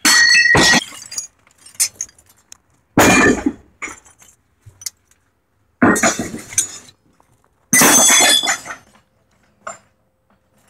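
Handfuls of small steel scrap (bolts, nuts, rods and fittings) tossed and dumped together: four loud metal crashes a couple of seconds apart, each ringing briefly, with lighter clinks in between.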